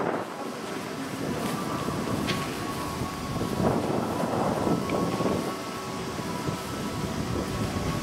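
Wind buffeting the camera microphone outdoors, rising and falling in gusts, strongest around the middle. A faint steady machine tone runs under it.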